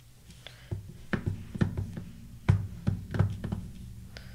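Clear acrylic stamp block knocking and tapping against the inkpad and work surface while a butterfly rubber stamp is inked and pressed onto paper. About seven short, dull knocks come at uneven intervals, the sharpest about two and a half seconds in.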